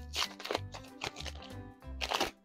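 Foil booster pack of trading cards being torn open, with short crinkling rips, over background music with a steady bass beat.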